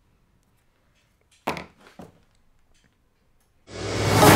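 A single thunk of a hard object about a second and a half in, followed by a lighter knock half a second later. Loud music starts just before the end.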